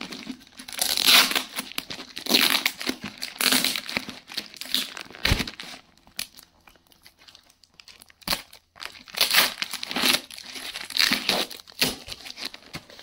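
A plastic courier mailer being picked at and torn open by hand around a cardboard box: irregular crinkling and tearing in clusters, with a quieter pause midway and a couple of short sharp knocks.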